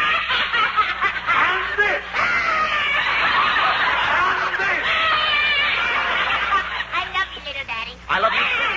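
A grown woman doing a little girl's voice, bawling and wailing loudly in long, wavering cries: fake crying put on to sound like a spanking. A studio audience laughs along.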